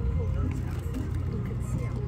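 Faint conversation over a steady low rumble of outdoor background noise.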